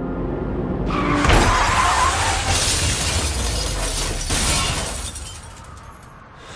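Car crash sound: a sudden crash with glass shattering about a second in, followed by a rush of noise that fades away over the next few seconds.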